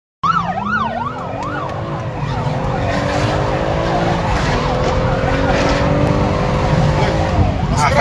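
Police siren yelping, a rapid rising-and-falling wail, over a car engine accelerating hard, its pitch climbing and dropping back twice as it shifts up, heard from inside a moving car with road rumble.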